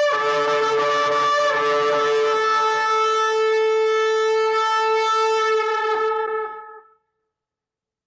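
A shofar blown in one long, steady blast, sounded as a call to prayer; the note fades out about seven seconds in.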